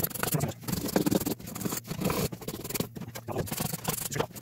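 Coarse 80-grit sandpaper on a hand sanding block rubbed back and forth along the edge of a wooden cabinet door frame, giving repeated rasping strokes, about two or three a second.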